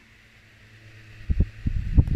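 A faint steady low hum, then from about a second and a half in, irregular low thumps and rumble that grow louder: handling noise from a phone's microphone as the phone is moved.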